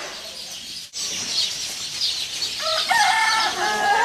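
A rooster crowing once in a long, held call over a steady hiss of background noise, starting past the middle.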